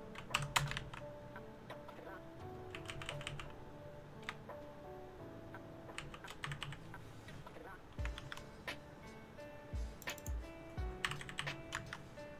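Computer keyboard typing in quick bursts of keystrokes with short pauses between them, over faint background music with held notes.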